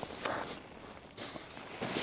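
A landed plaice flapping on seaweed at the water's edge: a few short rustling slaps.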